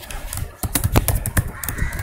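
Computer keyboard typing: a quick run of keystrokes.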